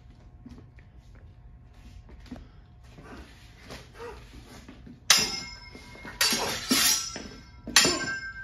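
Steel stage-combat broadswords clashing: a few seconds of quiet footwork, then about four sharp blade-on-blade strikes in the last three seconds, each leaving a metallic ring.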